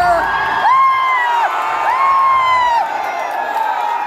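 Audience cheering as the dance music stops about half a second in, with two long, high-pitched whoops, each lasting about a second, over the general crowd noise.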